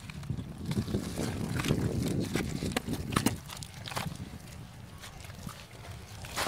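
Oyster shells knocking and clattering together as a mesh bag of freshly harvested oysters is lifted and handled, in scattered sharp clacks over a steady low rumble.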